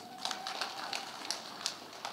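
Audience clapping: a patter of irregular, uneven claps after an announcement in a speech.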